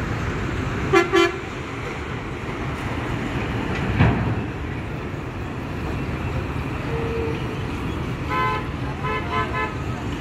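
Vehicle horns tooting over a steady low rumble of engines: two short toots about a second in, then a run of quick beeps near the end. A single thump about four seconds in.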